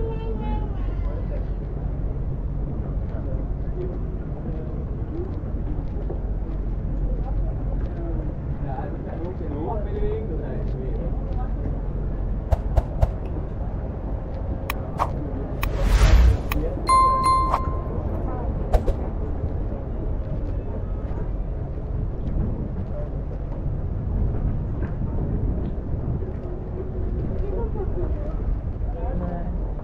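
Background chatter of passers-by on a busy boardwalk over a steady low rumble. A little past halfway comes a brief loud burst of noise, then a short ringing tone and a few sharp clicks.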